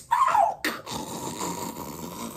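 A man's drawn-out groan, falling in pitch and lasting about half a second, then a quieter steady background.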